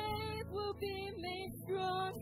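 Live worship band playing a slow song, with female voices singing held notes over guitars and drums.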